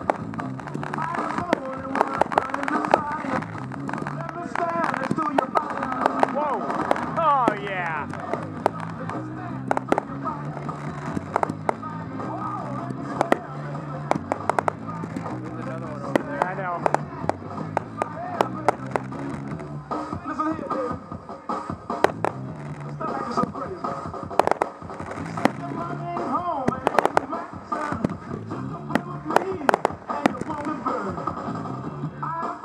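Aerial fireworks shells bursting in frequent sharp bangs, scattered through the whole stretch, over a song with singing played as the show's soundtrack.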